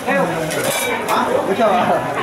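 Clinks and scrapes of metal against a flat steel roti griddle while pancakes are being worked on it, with a few sharp clicks.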